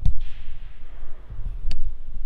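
Handling noise from a phone camera being moved and set in place: low rumbling bumps on the microphone, with a sharp click at the start and another near the end.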